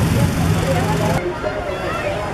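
Hot-air balloon propane burner firing: a loud, steady roar with a low hum and crowd voices under it. It stops abruptly about a second in, leaving crowd chatter.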